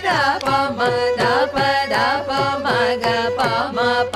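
Two women singing a Carnatic alankaram exercise in Rupaka talam on swara syllables, moving in quick steps from note to note. A mridangam accompanies them with steady strokes that drop in pitch.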